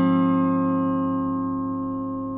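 Epiphone Alleykat electric guitar played through a Marshall Valvestate 10 amplifier: one chord, struck just before, is left ringing and slowly fades.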